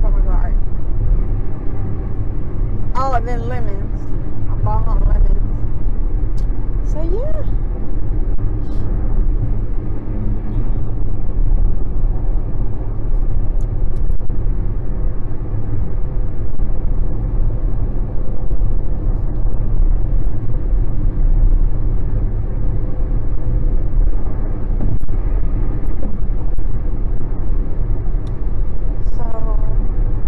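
Steady low rumble of a car's engine and tyres heard from inside the cabin while driving, with a few brief snatches of a voice a few seconds in and near the end.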